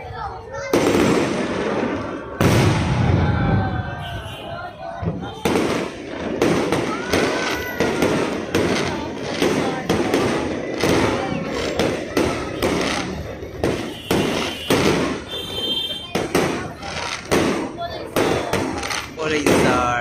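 Aerial fireworks going off: a rocket launching, then from about five seconds in a rapid run of sharp bangs and crackles, several a second.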